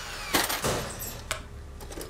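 A few short clicks and knocks, about three in two seconds, over quiet room tone.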